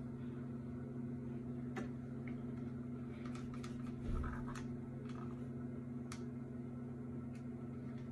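Quiet room tone with a steady low electrical hum, broken by a few faint clicks and a soft rustle of handling.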